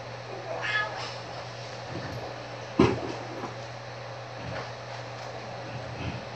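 A short, high, wavering cry a little after the start, then a single sharp thump a little under three seconds in, over a steady low electrical hum.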